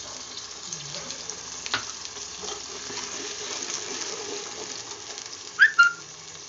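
Onion and ginger-garlic paste sizzling in hot oil in a steel kadai, a steady frying hiss. Near the end comes a short, loud squeak.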